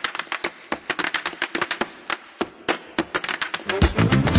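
Tap shoes striking a stage floor in a fast unaccompanied tap break: a dense, uneven run of sharp clicks with no music under it. The band comes back in just before the end.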